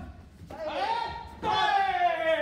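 Two drawn-out shouts echoing in a large hall: taekwondo kihaps during sparring. The first is shorter and rises near the middle; the second, louder, starts about three-quarters of the way in and is held while falling in pitch.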